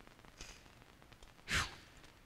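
A man's single audible breath, about one and a half seconds in, picked up close on his microphone during a quiet pause.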